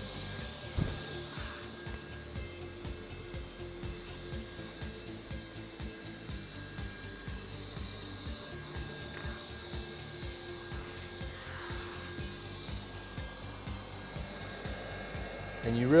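Flat quarter-moon knife shaving a heat-welded seam on rubber flooring, a faint scraping and rubbing, over the steady whir of a hot-air welding gun's blower.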